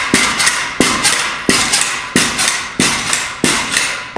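Pogo stick bouncing on a hard floor: about six landings, one roughly every two-thirds of a second, each a sharp clack with a ringing tail and lighter clicks in between, as the spring compresses under each hop.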